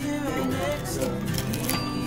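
A fork breaking into crispy deep-fried fish, giving a few short crackling crunches and clinks on the plate, over table chatter and background music.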